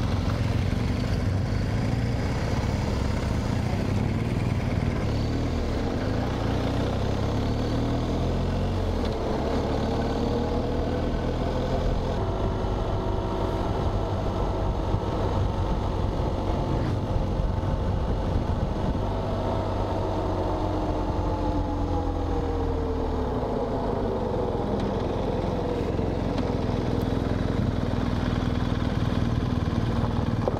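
BMW R 1250 GS Adventure boxer-twin engine running as the motorcycle is ridden, heard from the rider's position with road and wind noise. The engine note rises and falls with changes in speed through the middle, easing off near the end as the bike slows.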